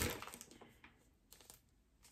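Packaging crinkling as items are handled in the opened parcel, fading out within about half a second, then near quiet with a faint click.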